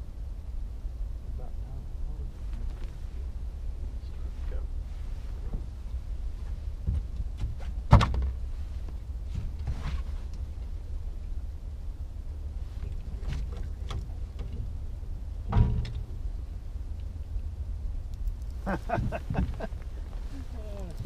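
Knocks on an aluminum boat's deck as an angler moves about: a sharp one about eight seconds in and a second about fifteen seconds in, over a steady low rumble. A man's voice comes in briefly near the end.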